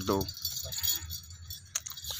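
Small bells on a goat's ankle bands and collar jingling as the goat walks.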